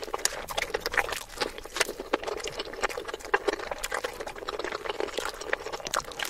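Close-miked chewing and wet mouth sounds from eating a toasted wrap, sped up to three times normal speed, making a rapid, irregular run of sharp clicks.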